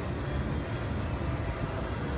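Steady low mechanical rumble of a rotating amusement-park balloon ride, its gondolas swinging round overhead.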